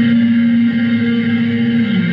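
Post-rock guitar music played through effects and a looper pedal, with layered reverberant tones. A low note is held steadily and then steps down to a lower note at the end.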